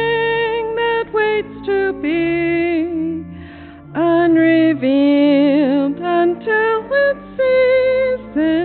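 A woman's voice singing a hymn phrase by phrase, with vibrato on the long held notes and a short breath pause between lines about three seconds in. Low sustained accompaniment notes hold underneath throughout.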